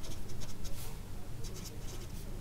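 Felt-tip marker writing on paper in a run of short, uneven strokes.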